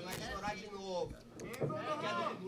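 Spectators shouting from the crowd: several overlapping raised voices with drawn-out yelled calls.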